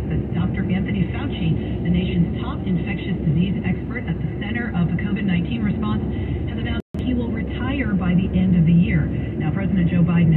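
Indistinct speech from a car radio over the steady road and engine noise of a car moving at freeway speed, heard inside the cabin. The sound cuts out completely for an instant about seven seconds in.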